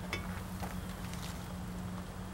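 A couple of faint clicks as pruning shears snip at an opo gourd vine, over a steady low rumble.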